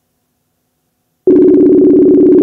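Ringback tone of an outgoing call: a loud, steady, warbling two-pitch ring that starts a little over a second in, after a silent pause between rings. The call is still waiting to be answered.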